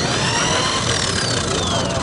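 RIDGID K-45 hand-held drain cleaner spinning up with a rising whine and then winding down with a slowly falling whine. It demonstrates the machine's low startup torque.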